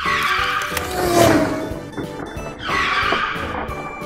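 Two car tire-screech sound effects over background music: one in the first second or so, the second shorter, about three-quarters of the way through.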